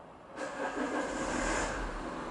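A road vehicle going by close to the microphone: a noise that comes in suddenly about half a second in, loudest through the middle, then eases into a steady traffic hum.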